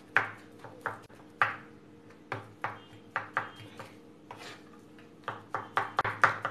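Kitchen knife chopping soft roasted aubergine flesh on a wooden chopping board: irregular knocks of the blade against the board, about a dozen, coming quicker near the end.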